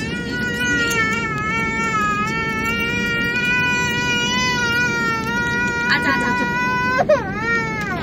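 A baby crying in an airliner cabin: one long wavering wail held for about seven seconds, then a short rising-and-falling cry near the end. Underneath it runs the steady rumble of the cabin while the jet taxis.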